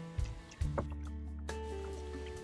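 Soft background music: a few plucked notes struck and left ringing, with a new note about half a second in and another near the middle.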